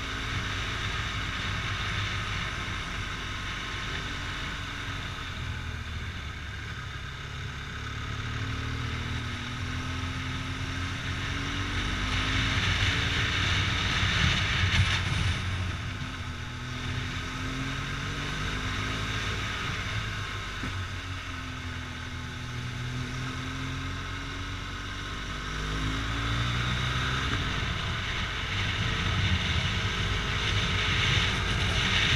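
Motorcycle engine under way at low speed, its revs rising and falling again and again, heard from a helmet camera. A rushing wind and road noise swells about halfway through and again near the end.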